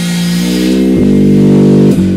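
Live jazz: an alto saxophone holds a long low note, moves to another held note about a second in, and grows louder toward the end.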